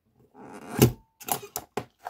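A Crop-a-Dile hand punch squeezed through a card cover: a rising crunch that ends in a loud snap about a second in, then three quick sharp clicks.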